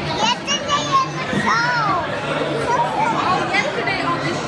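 Dining-room chatter from a crowded restaurant, with high-pitched children's voices. One child's voice sweeps up and down about one and a half seconds in.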